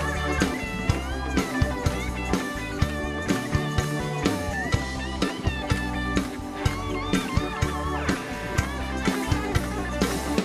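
Live rock band playing: an electric guitar lead with bent, gliding notes over a drum kit keeping a steady beat and a bass line.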